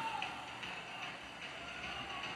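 Faint football-match ambience: a low steady hiss with faint, indistinct distant voices.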